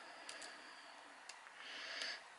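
Very quiet: a few faint ticks from fine 0.4 mm jewellery wire being wrapped around a wire pendant frame by hand, and a soft breath near the end.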